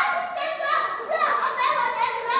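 A woman's high-pitched, wordless voice, drawn out and wavering up and down in pitch, with no clear words.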